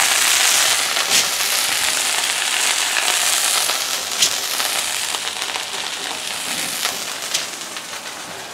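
Strip steaks and fat sizzling in a hot cast iron skillet as the steaks are lifted out. The sizzle dies down gradually, broken by a few sharp pops.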